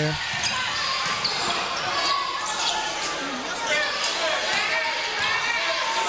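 A basketball bouncing on a hardwood gym court under the steady chatter and shouts of a crowd in a large gym.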